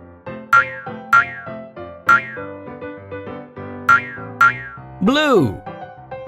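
Children's cartoon background music with five quick, sharp falling-pitch sound effects over the first few seconds. About five seconds in comes a longer boing that rises and falls in pitch.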